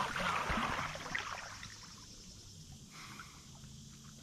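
Water splashing and sloshing that dies away over about two seconds, leaving quiet river background.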